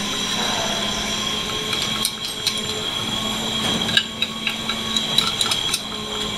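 A steady machine whine with a low hum, made of several fixed high tones, runs throughout. Over it come a few scattered light metallic clicks and scrapes as a hand tool works a steel strut in a paint-stripping tank.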